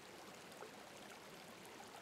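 Near silence: a faint, even hiss of background noise in a pause of the narration.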